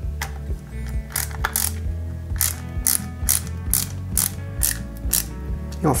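Hand ratcheting screwdriver clicking in short runs, about three clicks a second, as it drives small screws into a scale model's base.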